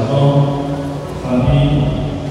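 A congregation singing a slow hymn together, the voices holding long, chant-like notes that change pitch about every second.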